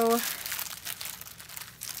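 Clear plastic wrapping crinkling as hands handle and pull open a cling-wrapped strip of small plastic bags of diamond-painting drills: a soft, irregular crackle.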